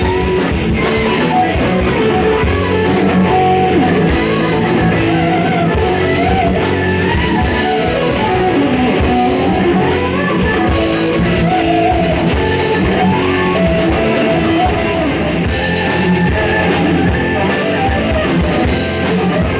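Heavy metal band playing live: two distorted electric guitars, bass and drum kit, loud and steady. Over them runs a guitar line of bending notes that rise and fall.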